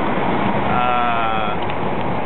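Wind and road noise in the open bed of a moving pickup truck. Near the middle a high, wavering call is held for about a second.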